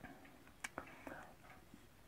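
Near silence, with a few faint clicks and light strokes of a marker on a whiteboard as a letter is started.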